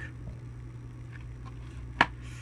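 Plastic Blu-ray case being handled and closed over a steady low hum, with a few faint ticks and a sharp click at the very end as the case snaps shut.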